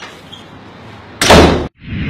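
A single loud bang a little over a second in, ringing briefly before it is cut off abruptly.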